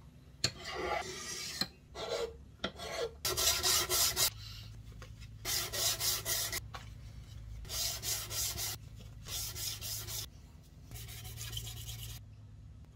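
Small hand plane shaving an ebony violin fingerboard in repeated scraping strokes: a few short strokes first, then about five longer strokes of roughly a second each. The fingerboard is being planed true during a violin service.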